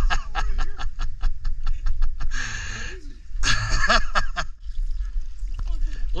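A person laughing, first in a quick run of short breathy pulses, then in two longer breathy laughs, over a steady low rumble.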